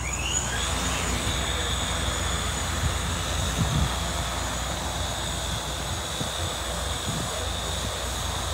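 DS30 hydrogen fuel cell multirotor drone's rotors running as it lifts off and climbs on its tether: a whine that rises in pitch over the first second, then holds steady.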